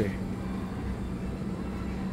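Steady low room hum with an even background hiss, with no distinct events.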